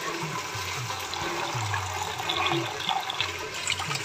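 Tap water running in a steady stream over peas and sliced tomatoes in a plastic basket, splashing into a steel sink as the vegetables are rinsed.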